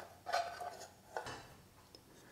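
Amplifier circuit board and its metal panels sliding out of a finned metal heatsink case: light metal scraping and clinks in two short bouts, about half a second and a second and a quarter in.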